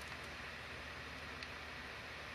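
Quiet, steady background hiss with a low hum, and one faint tick partway through.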